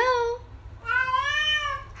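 Domestic cat meowing in a drawn-out, questioning call that sounds like a human 'hello?'. Two calls: one rises sharply and ends about half a second in, then a longer one of about a second rises and falls.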